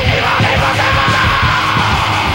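A 1980s heavy metal band plays in a lo-fi live practice-room recording, with distorted guitars and drums. A high, held yelled vocal note comes in about half a second in and slowly sags in pitch.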